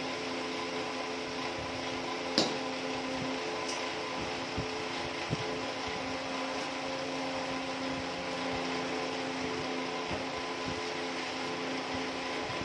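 An electric pedestal fan running steadily, its motor humming under a constant whoosh of air. A few light knocks from the cardboard parcel being opened by hand, with one sharp click about two and a half seconds in.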